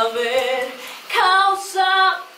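A woman singing a Spanish-language ballad with no instruments heard, holding long notes with vibrato: one phrase fades about a second in, then a new line begins with an upward slide into another held note.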